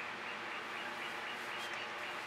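Faint outdoor background noise with a bird chirping in a quick, steady run of short high notes.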